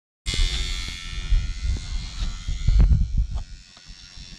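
Wind buffeting the microphone in gusts, over the steady high whine of a radio-controlled model airplane's motor flying overhead. The whine fades away about three seconds in.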